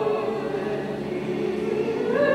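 Orthodox church choir singing a slow liturgical chant in long held notes.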